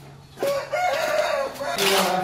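A rooster crowing once, a single long call of about a second, followed near the end by a short noisy burst.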